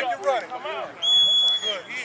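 A short, shrill whistle blast, held steady for under a second about halfway through, over people talking.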